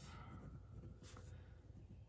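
Faint scratching of a Tombow Monograph mechanical pencil's 0.5 mm lead writing on notebook paper.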